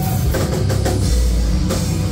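A live rock band playing loud: distorted electric guitar and bass over a drum kit, with drum and cymbal hits landing several times a second.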